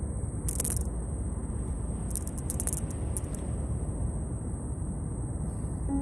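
Steady low rumbling background noise with a thin high steady hiss, and a few brief faint clicks about half a second in and again two to three seconds in.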